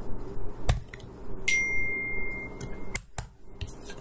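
A few sharp clicks of a computer keyboard and mouse as a name is edited, over a low steady background hum. A faint steady high tone runs for about a second and a half in the middle.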